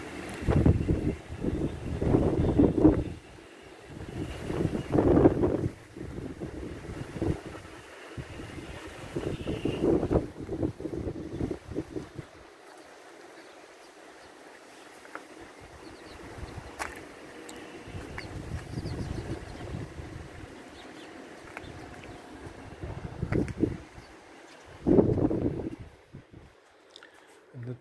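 Strong, gusty wind buffeting the microphone in irregular surges of low rumble. It is loudest in the first few seconds and again just before the end, with a calmer lull in the middle.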